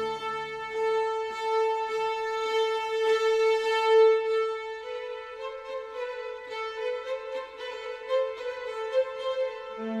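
Slow violin music: long notes held steadily, moving up to a new note about halfway through.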